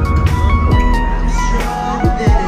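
Live pop concert music from the stage sound system, heard from within the audience: sustained keyboard-like notes and a melody over a kick drum beat.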